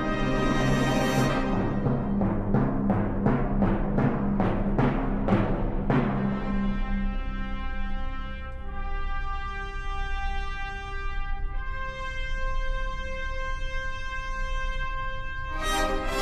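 Symphony orchestra playing. In the first six seconds the timpani beat about two strokes a second under the brass. The brass then hold long chords, and the full orchestra comes back in loudly near the end.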